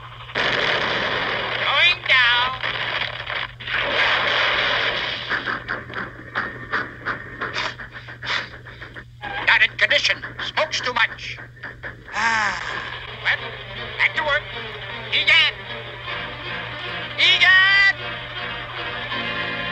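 Old cartoon soundtrack of music mixed with sound effects: long stretches of hissing noise, rattling clicks, and several wavering, sliding tones.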